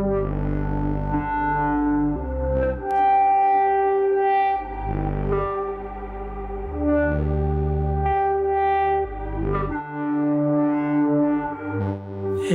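Eurorack modular synthesizer running a generative Polykrell patch, with a bass voice and a melody voice playing together. Held, overtone-rich notes change pitch every second or two over a shifting low bass line.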